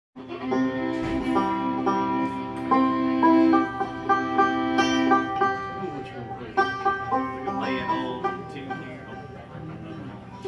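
Fiddle and banjo warming up together: the fiddle holds long bowed notes over banjo picking for about the first five seconds, then the playing thins out to scattered notes.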